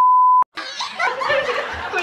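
A steady 1 kHz censor bleep masking a spoken word cuts off sharply about half a second in. It is followed by a man and a woman laughing.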